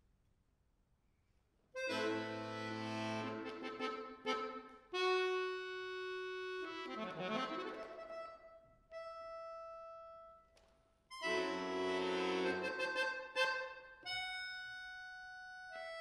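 Bayan (chromatic button accordion) played solo. After a near-silent pause it enters about two seconds in with a loud full chord over deep bass, then moves through phrases of chords and long held single notes. It breaks off briefly and comes back in with another loud chord.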